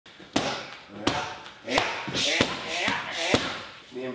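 Strikes landing on Muay Thai pads: five sharp smacks, roughly a second apart or a little less.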